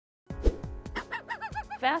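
Opening music sting with low thumps and held tones. From about a second in, a quick run of about five short chirps, each rising and falling in pitch, sounds over it. A woman's voice starts at the very end.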